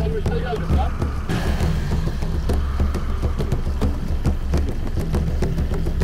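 Off-road vehicle engine running steadily at low revs, a continuous low rumble, with a hissing wash of noise joining in about a second in.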